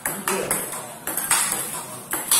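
Celluloid-type table-tennis balls clicking off rubber-faced rackets and bouncing on the table in a fast multiball forehand drill: a quick, irregular run of sharp ticks, several a second.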